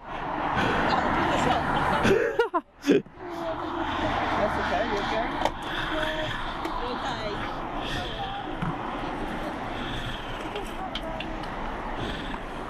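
Indistinct, muffled talking over steady street background noise, with a brief loud bump about two to three seconds in.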